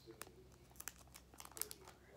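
Plastic binder pocket pages crinkling as baseball cards are handled and slid in their sleeves, a few short sharp crackles.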